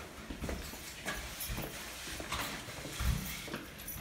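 Footsteps walking along a corridor, short knocks at about two steps a second.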